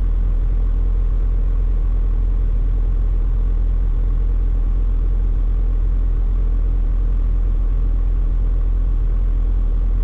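Farm tractor engine idling steadily while it warms up on a frosty morning, heard from inside the closed cab.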